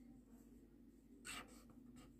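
Felt-tip whiteboard marker writing on paper: one short, faint scratch of the tip about a second in, otherwise near silence.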